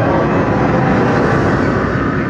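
Loud, steady rumbling sound effect from an exhibit's multimedia show, played as a bank-style vault door is revealed.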